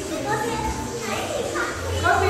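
Children's voices: high-pitched talking and calling out, with other voices in the background.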